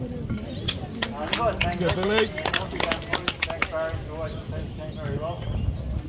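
Scattered hand-clapping from a few people, a dozen or so uneven claps over about three seconds starting just under a second in, with people's voices chattering around it.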